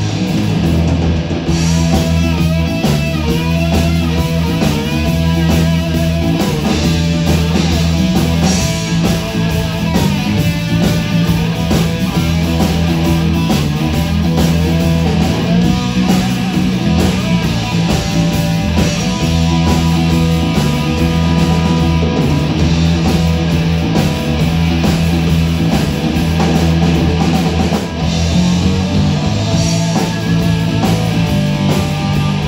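Live blues-rock band playing an instrumental break: electric guitars and a drum kit, a bending lead guitar line over a repeating low riff, heard as a room recording in the hall.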